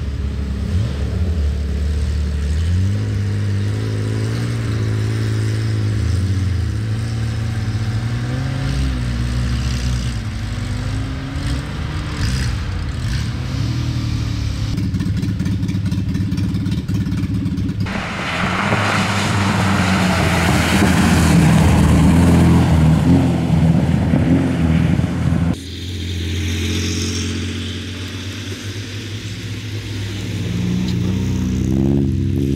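Historic rally car engines revving and accelerating as cars pass one after another on a snowy special stage, the engine pitch rising and falling with each gear and throttle change. About two-thirds through comes a louder, noisier stretch that cuts off suddenly, then another engine revving up toward the end.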